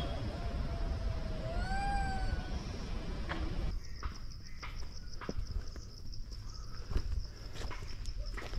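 Low wind rumble with a single pitched animal call about two seconds in that rises and then falls. From halfway through, a steady high-pitched drone of cicadas and crickets fills the forest, with footsteps crunching on a stony path.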